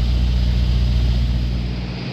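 Heavy diesel engine idling: a steady, even low hum that cuts off at the end.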